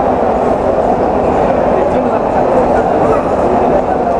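Steady din of many people talking at once, a loud crowd hubbub with no single voice standing out.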